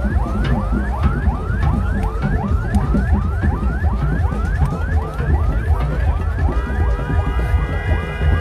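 Electronic yelp siren on a convoy vehicle, rising sweeps repeating about three times a second over a low rumble of crowd and engines. A second, steady tone of several pitches joins about six and a half seconds in.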